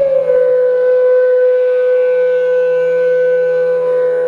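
A flute holds one long, steady note, sliding slightly down into it at the start, over a faint low steady drone in calm instrumental music.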